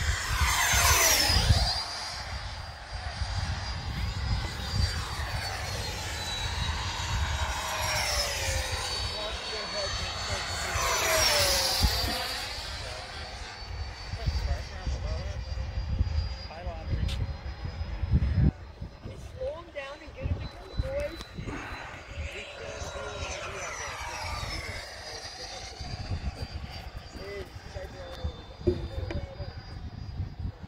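Electric ducted-fan whine from several Freewing F-22 RC jets flying in formation, the pitch sliding down each time they pass, at about one, eight, twelve and twenty-four seconds in. Wind rumbles on the microphone throughout.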